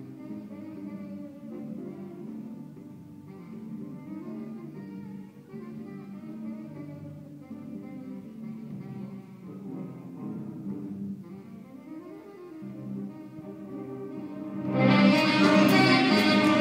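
High school jazz band with saxophones playing a tango arrangement, played softly and sustained. About a second before the end, the sound jumps much louder as the audience breaks into applause and cheering.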